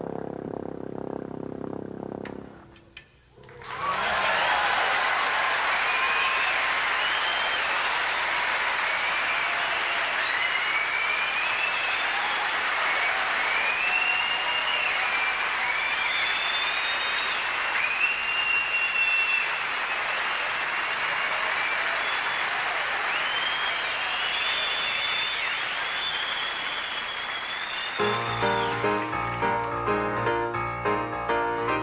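A jazz band's closing notes, then after a brief gap a concert audience applauds for over twenty seconds, with many whistles rising and falling above the clapping. Near the end, solo grand piano playing begins.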